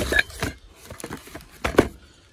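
Cardboard box flaps being pulled open and the packaging handled: a few sharp knocks and scrapes of cardboard, the loudest near the end.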